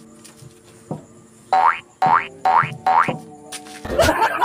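Background music with four quick rising cartoon 'boing' sound effects, each an upward swoop about half a second apart, starting about a second and a half in. A short thump comes just before the end.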